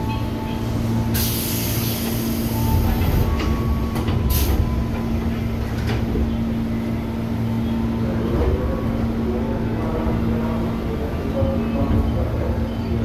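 Interior of a KRL Commuterline electric train starting to pull away from a station: a steady hum over a low rumble, with a burst of hiss lasting about two seconds, starting about a second in, and a short second hiss about four seconds in.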